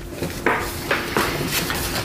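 Paper rustling and crinkling as a folded instruction sheet is handled and opened, in several short strokes.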